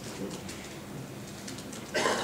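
Quiet room noise in a lecture hall: a faint steady hum and hiss with scattered soft rustles and small clicks, as audience members raise their hands.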